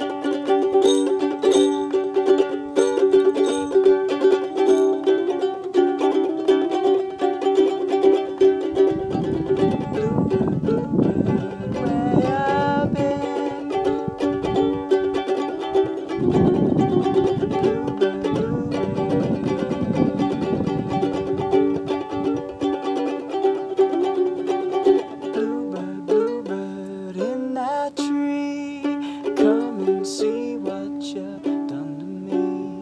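Ukulele strummed solo in an instrumental break of a folk song, a steady run of chords with no singing. A low rumbling noise comes in twice for a few seconds in the middle.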